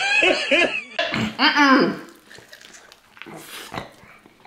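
A man's voice making loud wordless vocal sounds with bending, then falling pitch, partly through lo-fi phone-video audio, for about the first two seconds. Only faint small clicks follow.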